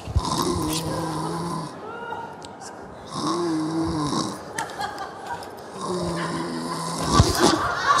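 A person asleep in bed snoring in an exaggerated, comic way: three long snores, each about a second and a half, roughly every two and a half seconds.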